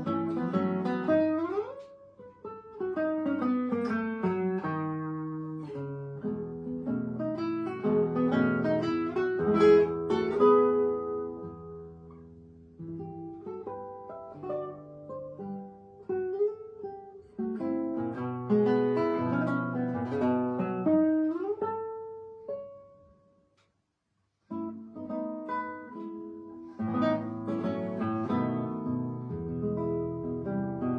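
Solo classical guitar played fingerstyle, with flowing runs and arpeggiated chords. About two-thirds of the way through, the music fades to a brief silence, then the playing starts again.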